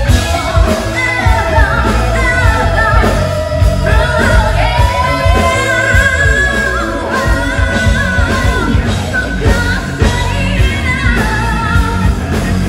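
Live amplified rock band: a woman sings lead over electric guitars, bass, drums and keyboard.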